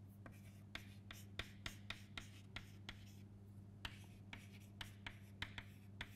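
Chalk writing on a chalkboard: a run of short, irregular taps and scratches, about two to three a second, as letters are written, over a steady low hum.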